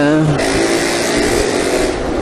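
Riding noise from a Yamaha X-Ride motor scooter in city traffic: a steady hiss of wind and road with a low engine hum underneath.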